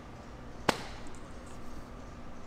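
A single sharp click or knock about two-thirds of a second in, over steady gym room tone.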